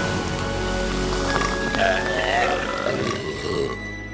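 Carbonated soda fizzing and gushing as it floods the ant tunnels, a dense crackling hiss that fades away near the end, over background music.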